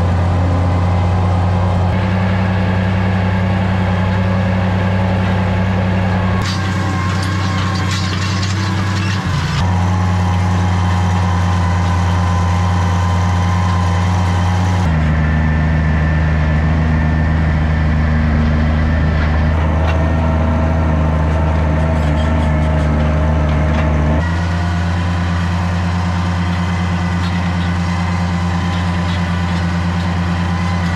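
Tractor engine running steadily at working speed, heard close up from an Oliver 1650 pulling a hay rake. The engine note changes abruptly several times.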